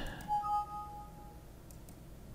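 Windows alert chime sounding as a 'file already exists, replace it?' warning dialog pops up. It is two clear electronic tones a little after the start: a higher one that stops quickly and a lower one that rings on for about a second.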